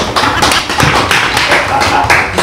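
A class of children clapping their hands together in a quick, even rhythm.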